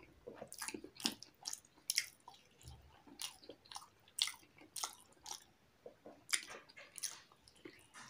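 A person chewing a mouthful of rice and boiled egg with curry, with irregular short wet clicks, a few a second.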